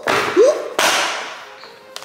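Play sand being shaken out of a paper bag into a plastic tub: two hissing rushes, one at the start and one a little under a second in, each fading out, with the bag's paper rustling.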